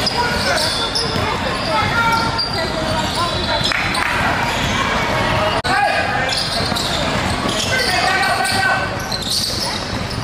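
A basketball bouncing on a hardwood gym floor during play, with indistinct voices of players and spectators echoing in a large hall.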